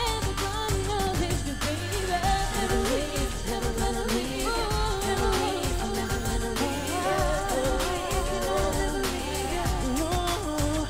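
Pop song performed live, with a woman singing the melody into a microphone over a steady beat with a deep bass.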